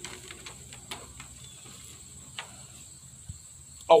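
Faint steady high-pitched insect chirring, typical of crickets, with a few scattered small clicks.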